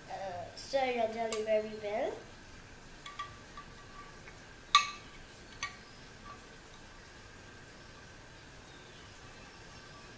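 Metal spoon clinking against a glass bowl while stirring jelly into hot water: a few scattered, ringing clinks between about three and six seconds in, the loudest near the middle.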